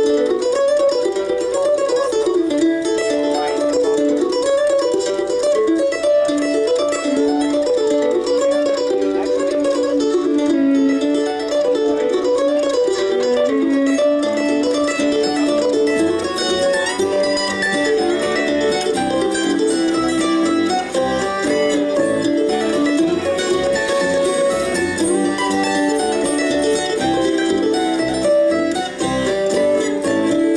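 An acoustic bluegrass string band plays a happy, bouncy tune. Guitar and mandolin carry the quick melody at first, and upright bass and fiddle come in about halfway through.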